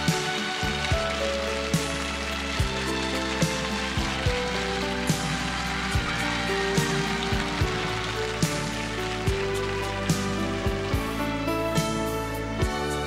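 Instrumental passage of a slow Korean pop ballad, with no singing: sustained chords and a bass line over a slow, steady drum beat with cymbal shimmer.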